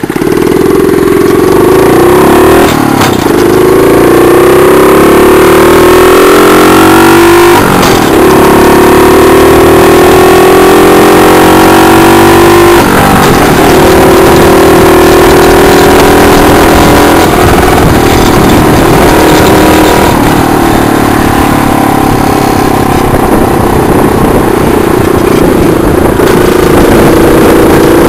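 Mini chopper's small 48 cc four-stroke engine pulling away and accelerating. Its pitch climbs and drops back three times, about 3, 8 and 13 seconds in, as the semi-automatic gearbox shifts up. After that it holds a steadier speed with slight rises and falls.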